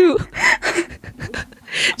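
Breathy laughter in short bursts, with gasping in-breaths, picked up close on a studio microphone.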